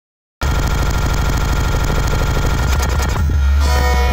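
Dead silence, then less than half a second in, loud harsh noise music cuts in abruptly: a dense, distorted wall of sound over a heavy low rumble, with a few held tones coming through near the end.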